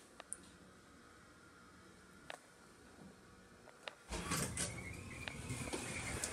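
Old Dover elevator arriving: a few faint clicks over near-quiet, then about four seconds in the sliding door opens with a low rumble and a faint steady whine.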